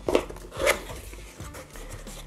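A cardboard box being handled and its lid opened: a few light clicks, then a rustling scrape of cardboard about half a second in, followed by quieter handling.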